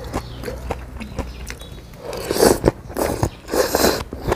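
Close-miked eating: chewing with small wet mouth clicks, then two loud slurps as a mouthful of thin noodles is sucked in, about two and a half seconds in and again near the end.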